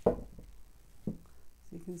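A sharp thump, then a softer knock about a second in, from a painted canvas being knocked against the table as it is turned by hand.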